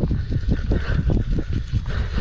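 Fly reel being cranked fast to take up line as a hooked fish swims toward the angler, giving a quick run of clicks, about ten a second.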